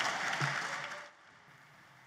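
Audience applauding, fading out about halfway through to near silence.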